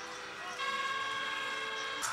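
Street-parade crowd chatter, then about half a second in a loud horn note starts and is held steady.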